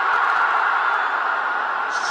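Stadium crowd cheering steadily as a high catch is taken for a wicket.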